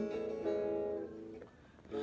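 Electric guitar chord strummed and left to ring, with a second strum about half a second in that fades away before the next strum at the very end.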